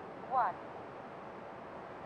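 Faint steady outdoor background hiss, with one short spoken word near the start.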